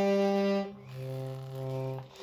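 Small accordion playing held chords: the first breaks off about two-thirds of a second in, and a second, quieter chord follows and is held until just before the end.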